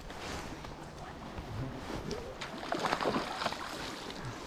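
Steady rush of flowing river water, close to the microphone.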